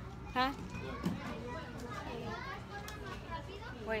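Children's voices and chatter in the background, with a short close "huh?" near the start.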